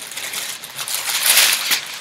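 Tissue wrapping paper rustling and crinkling as it is handled and pulled out of a cardboard box, loudest a little past the middle.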